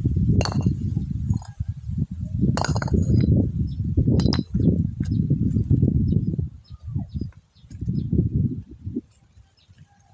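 Sharp clinks of stone knocking on stone, about half a second in, near three seconds and just after four seconds, as broken rock pieces are tossed and a flat stone slab is shifted among boulders. Under them runs a loud, uneven low rumble that dies away near the end.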